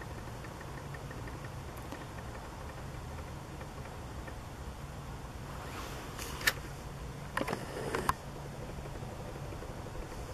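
A steady low, engine-like mechanical hum, with a few faint clicks and taps between six and eight seconds in.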